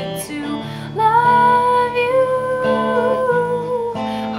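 A woman singing to her own electric guitar accompaniment; about a second in she starts one long held note that wavers slightly, over sustained guitar chords.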